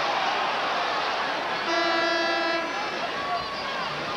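Basketball arena horn sounding once, a steady buzzing note lasting about a second, near the middle, over the continuous noise of the arena crowd during a stoppage after a foul call.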